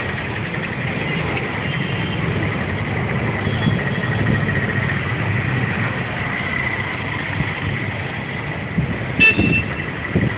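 Steady urban road traffic, with vehicle engines running and passing. A brief high-pitched sound, like a short horn toot, comes near the end.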